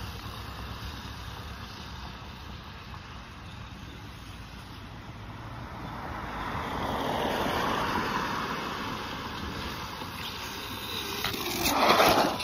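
A vehicle driving on a wet road, with a steady hiss of tyres on wet pavement. The sound swells in the middle, and a louder, closer pass comes near the end.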